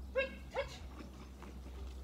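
A dog giving two short, high-pitched yips about half a second apart, the second sliding up in pitch.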